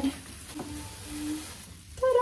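Quiet rustling and crinkling of a clear plastic wrap as a large cardboard gift box is handled and tilted, with two faint short tones about half a second and a second in.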